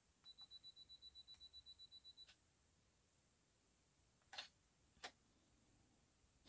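Canon DSLR self-timer beeping quietly, a high tone about eight times a second for two seconds, ending in the click of the shutter opening. About two seconds later the shutter clicks shut at the end of the 2-second exposure, and one more small click follows.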